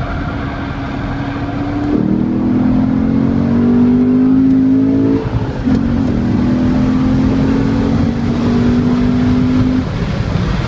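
Chevrolet C7 Corvette Stingray's V8 engine heard from inside the cabin, accelerating hard. The engine note steps up as the throttle opens about two seconds in and climbs steadily. It drops with an upshift a little after five seconds in, then climbs again.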